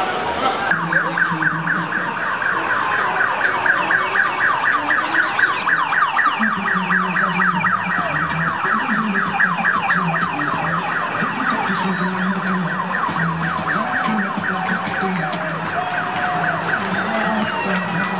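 Police escort siren in a fast yelp: rapid falling sweeps repeated several times a second without a break.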